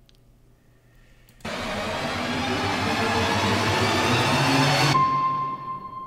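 Electronic sound design from a music-video soundtrack: after a near-silent start, a sudden loud rushing noise comes in about a second and a half in and swells, then cuts off abruptly near the end into a steady high beep-like tone.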